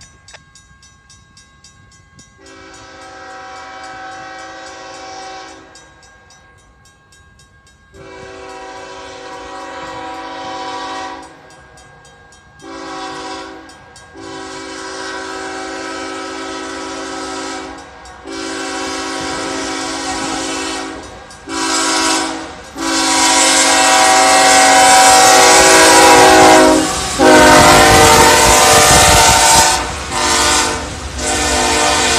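CSX freight locomotive's multi-chime air horn sounding a sequence of long and short blasts, long-long-short-long, the grade-crossing signal. The blasts grow louder as the train approaches, and near the end the locomotives pass close by with a low engine and wheel rumble under the horn.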